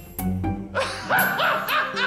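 Background music, joined about a second in by a quick run of short, high, yelping dog-like cries, about four a second.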